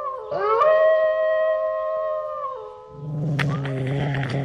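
Added spooky sound effects: a held howling chord of several pitches breaks off and swells up again just after the start and fades around two and a half seconds in. A deep, falling growling roar with crackles follows from about three seconds in.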